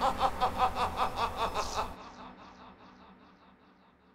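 Outro music: a fast, evenly pulsing figure that cuts off about two seconds in, leaving an echoing tail that fades away.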